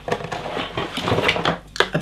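Hands rummaging in a cardboard product box: packaging rustling and scraping, with a few sharp clicks and knocks, as a small plastic device is pulled out.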